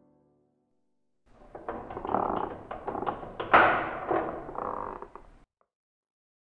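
A heavy wooden door being unlatched and opened: a run of clicks and rattles, with one loud thunk about halfway through, stopping suddenly near the end.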